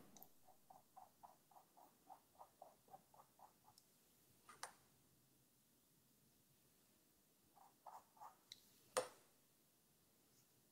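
Faint brushing of a flat brush worked back and forth on a stretched canvas, about four soft strokes a second for the first few seconds, then a few light strokes later on, with a sharp tap about nine seconds in.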